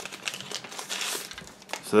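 Thin white packing wrap crinkling as it is crumpled and handled, in a run of irregular rustles and small clicks.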